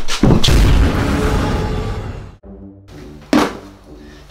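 A loud explosion-style boom sound effect with a long rumbling tail that cuts off suddenly about two and a half seconds in. Background music follows, with one sharp hit.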